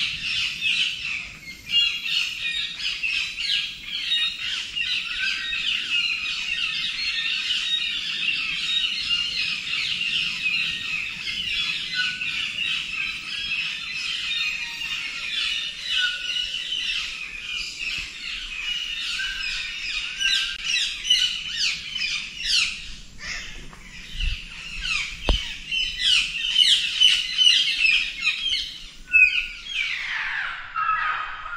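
A chorus of many tropical forest birds chirping and calling at once, dense and unbroken, growing busier near the end.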